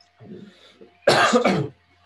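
A man coughs twice in quick succession, loudly, about a second in, after a quieter sound from the throat.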